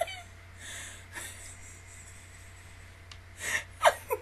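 A woman's breathless laughter: faint breaths, then near the end a sharp gasping breath and the start of a giggle.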